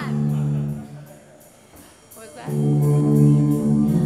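Amplified electric guitars holding ringing chords that fade away about a second in. After a short lull, a new sustained chord rings out about two and a half seconds in.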